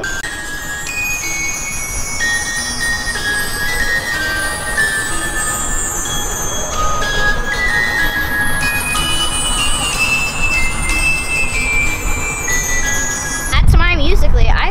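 Music playing back from a phone's speaker: a melody of held notes stepping up and down over a steady low rumble, which swells louder near the end.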